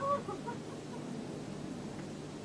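A brief high-pitched call right at the start, followed by a few shorter chirps, over a steady background hiss and hum.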